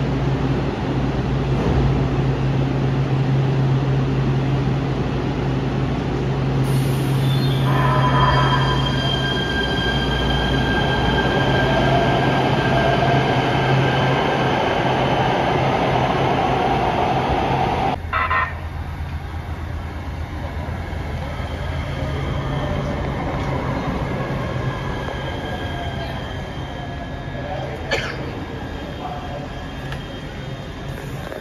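Electric light rail trains in a station: a steady low hum with whining electric motor tones over it. About two-thirds of the way through the sound changes abruptly to a quieter hum of a train standing at a platform, with one sharp click near the end.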